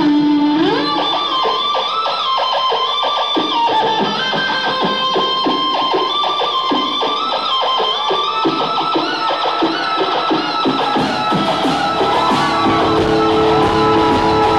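Live rock band led by electric guitar: a held note bends upward, then runs into a fast line of picked notes. The band's sound grows fuller and deeper about eleven seconds in.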